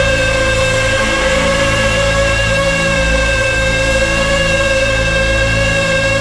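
Live rock band music: a long held chord over a steady bass note, with no singing.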